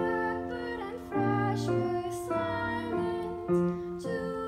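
Two young female voices singing a duet in harmony over a piano accompaniment, with held notes that change every half second or so.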